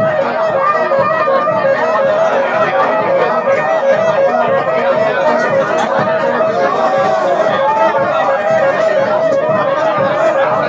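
Saxophone playing a tune with a small street band, with people chattering over the music.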